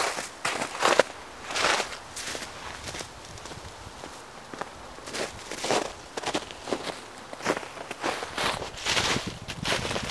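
Footsteps on thin snow over dry fallen leaves: a crunch with each step, at an uneven walking pace.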